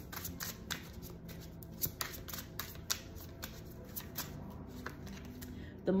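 A tarot deck being shuffled by hand: a run of irregular light card clicks and slaps.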